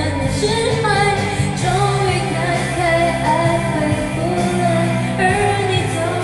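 A woman singing a Mandarin pop song over a backing track, her voice gliding between held notes above the steady accompaniment.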